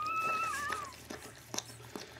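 A newborn husky puppy whining: one thin cry of just under a second that drops in pitch at its end, followed by a few faint clicks.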